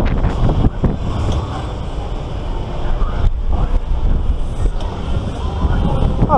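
Heavy wind buffeting the microphone of a camera mounted on a swinging pirate-ship ride as the boat swings through its arc, easing a little midway and building again.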